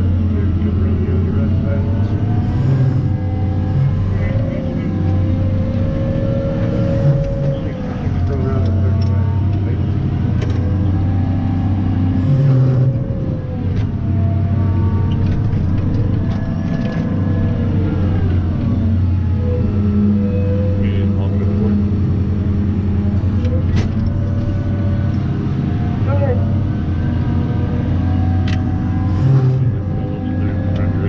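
A Cat 994 wheel loader's V16 diesel engine, heard from inside the cab, running steadily under load. Its pitch rises and falls every few seconds as it revs through the dig, lift and dump cycle.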